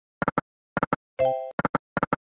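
Video slot machine sound effects: the reels stop one after another, each with a short double click. A brief pitched chime sounds about a second in, as the dollar scatter symbol lands on the middle reel.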